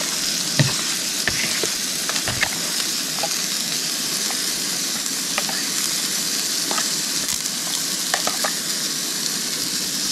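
A steady hiss as the pot of vegetable soup heats towards the boil, with scattered clinks and scrapes of a fork and a metal spoon against the pot as chopped tomato goes in and the soup is stirred.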